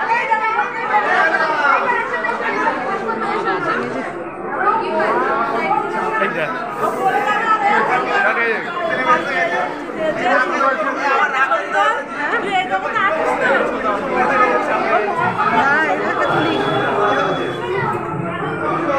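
Many people talking at once: steady overlapping chatter of a crowd of guests, with no one voice standing out.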